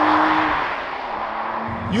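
Porsche 911 (992) Carrera S's twin-turbo flat-six pulling away, its engine note rising slightly in pitch, then fading as the car drives off around a bend.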